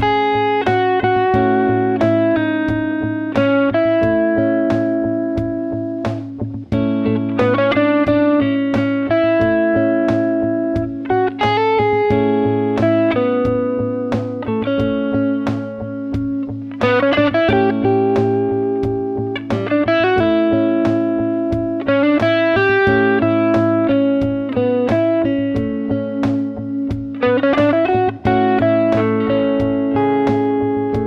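Electric guitar, a Fender Stratocaster, improvising single-note melodic lines over a looped backing of a sustained A major chord and a steady drum beat. The lines are in the A Lydian mode, with its raised fourth, and about halfway through they switch to A Ionian, the plain major scale.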